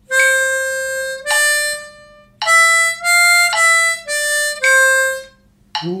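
Diatonic harmonica played one clean single note at a time in a slow, even rhythm exercise: two long quarter notes, four shorter eighth notes, then a long quarter note again. The line steps up and back down by step (4 blow, 4 draw, 5 blow, 5 draw, 5 blow, 4 draw, 4 blow).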